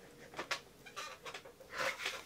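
A man's faint mouth clicks and breathing, with a breathy exhale near the end.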